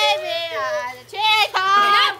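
Young girls' high-pitched voices making long, wordless sliding vocal sounds, broken by a short pause about a second in.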